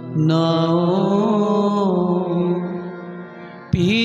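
Sikh kirtan: a male singer holds a long, wavering note on the syllable "naa" over a steady harmonium accompaniment, and the note slowly fades. A new sung phrase starts loudly just before the end.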